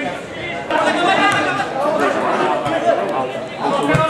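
Several people talking close by, their voices overlapping into indistinct chatter.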